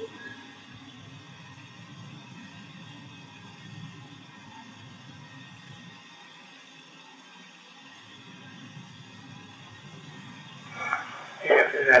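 Steady hiss and low hum of a poor-quality tape recording in a small room, with a man starting to speak about eleven seconds in.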